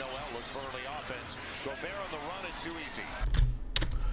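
Basketball game broadcast audio playing fairly low: a commentator talking over arena noise, with a ball dribbling on the hardwood court. Near the end comes a low thump and a few sharp clicks like a computer keyboard or mouse.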